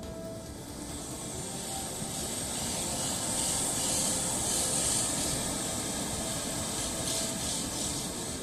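Muddy floodwater rushing over the ground and across a road, a steady hiss that swells through the middle and eases near the end, with faint background music under it.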